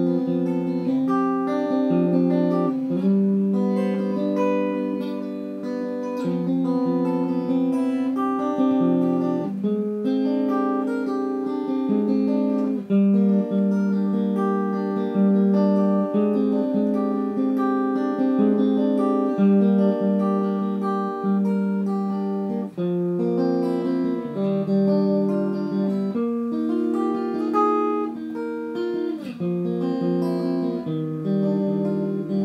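Solo guitar instrumental: a plucked melody of single notes over lower held chord tones, played at an even pace.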